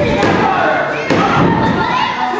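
Two thuds on a wrestling ring's canvas, about a second apart, with voices shouting in the hall.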